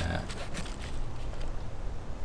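A man's brief hesitant "uh", then a pause with a few faint rustles and a steady low rumble.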